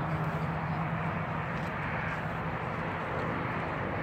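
A steady low engine-like hum over outdoor background noise; the hum weakens a little about halfway through.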